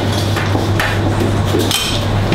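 Commercial kitchen clatter: several short knocks and clinks of utensils and dishes on steel counters over a steady low hum.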